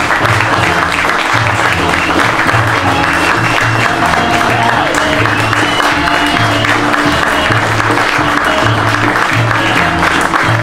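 Audience applauding steadily over loud music with a repeating bass line.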